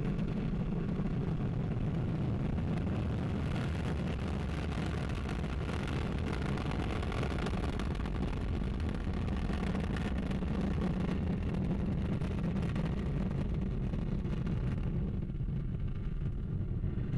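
Ariane 5 rocket at liftoff, its Vulcain main engine and two freshly ignited solid rocket boosters producing a steady, deep rumble.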